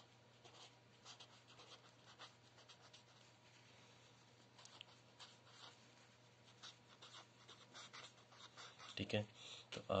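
Marker pen writing on paper: faint, short scratchy strokes, one after another, over a steady low hum.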